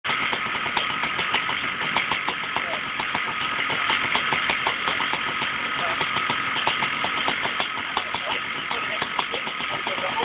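Quad bike engine running steadily, with many irregular short clicks and knocks throughout.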